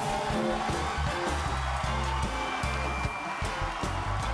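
Studio band playing upbeat music with a moving bass line and a steady drum beat, with a studio audience applauding.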